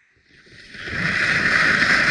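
Völkl skis sliding and carving on groomed snow, a rushing hiss that builds from near quiet to loud about a second in as the skier picks up speed and turns, with wind rumbling on the helmet camera's microphone.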